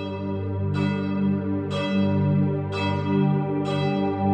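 A church bell tolling, struck about once a second with four strikes here, each one's tones ringing on into the next. Beneath it runs a steady low musical drone.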